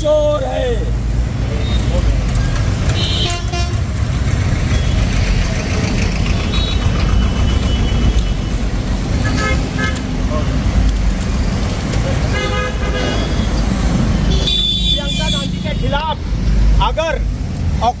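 Road traffic running past, with several short vehicle horn toots, and people's voices near the end.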